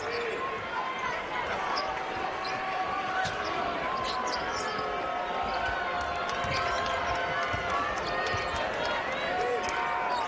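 A basketball being dribbled on a hardwood court during live play, under steady arena crowd noise with voices.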